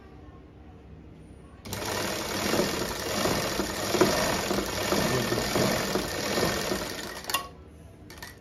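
Seiko industrial sewing machine running steadily as it stitches a sleeve onto a kameez, starting about two seconds in and stopping abruptly near the end.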